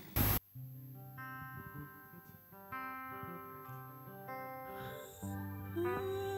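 Soft opening of a live gospel worship song: quiet sustained chords that change every second or so. A short loud burst of noise comes at the very start, and a voice enters near the end.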